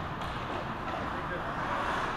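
Ice rink ambience: indistinct chatter of spectators over a steady background noise, with no clear puck or stick impacts.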